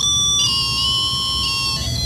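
Electronic music: several steady high tones held together, shifting in pitch about half a second in, over a low hum.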